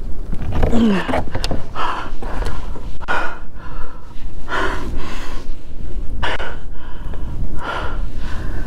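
A man breathing hard in deep, gasping breaths about every second and a half, shaky with excitement.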